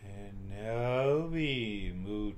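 A man's voice chanting one long, drawn-out mantra syllable, its pitch rising and then falling back.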